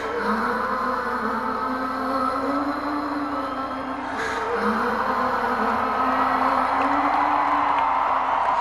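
Live arena concert sound: slow, drawn-out melodic notes over steady crowd noise, the phrase gliding up and starting again about every four seconds.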